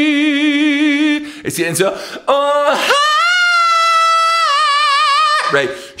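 A single voice singing unaccompanied in an operatic head-voice style with wide vibrato. It holds a low note, then sings a few short notes, then holds a long high note about an octave up before stopping.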